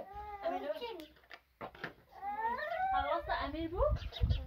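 A young child crying: two drawn-out, high-pitched, wavering cries, the second one longer, starting about two seconds in.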